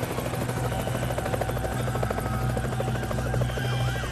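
A steady helicopter drone with a fast, even rotor chop. Near the end a siren starts, its pitch sweeping quickly up and down.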